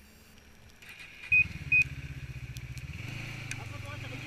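A snowmobile engine starts up about a second in and idles steadily, settling slightly lower near the end. Two short high beeps sound as it starts.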